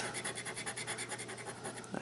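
Metal scratching tool scraping the latex coating off a scratch-off lottery ticket in quick, even back-and-forth strokes, several a second.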